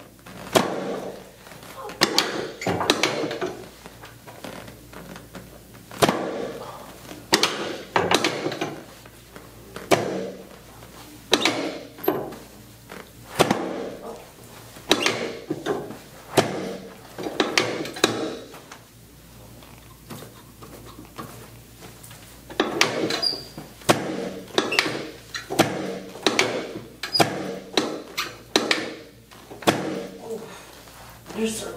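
Sharp thunks and clacks from a chiropractor's hand thrusts on a face-down patient's lower back and pelvis on a segmented adjusting table. They come every second or two, with a quieter pause about two-thirds of the way through.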